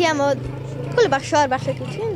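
A high young voice speaking in short phrases, over a steady low hum.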